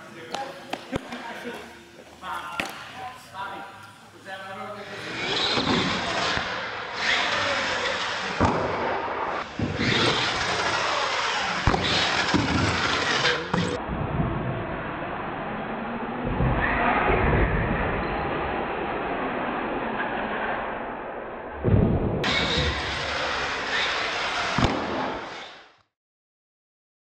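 Radio-controlled monster truck driving and jumping on a concrete floor: a steady rush of motor and tyre noise broken by repeated sharp knocks as it lands and bangs into things, with people talking in the background.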